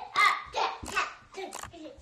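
A toddler's voice, a few short bits of talk or babble, mixed with a few light knocks of the camera being handled.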